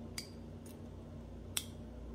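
LEGO Technic plastic parts clicking as a pin-and-axle piece with a gray pinwheel is pushed into an axle hole: two sharp clicks about a second and a half apart with a fainter one between, over a low steady hum.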